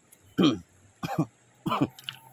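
A person's voice making three short wordless sounds about two-thirds of a second apart, each dropping in pitch, much like coughs or throat-clearing.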